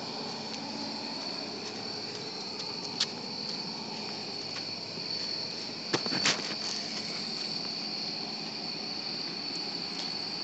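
Crickets singing in a steady, continuous high-pitched chorus, with a couple of brief knocks about three and six seconds in.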